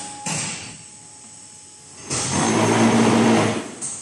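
Hydraulic concrete paving-block machine working through its cycle: a sharp clunk just after the start, then a loud, steady hum and rush lasting about a second and a half from about two seconds in, as the pallet of freshly pressed hexagon pavers is pushed out onto the conveyor.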